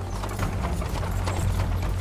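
Horse hooves clip-clopping in a quick, irregular run of knocks, over a low steady drone of background score.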